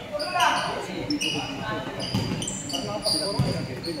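Basketball bouncing on a hardwood gym floor amid short, high-pitched sneaker squeaks, echoing in a large indoor hall, with players' voices.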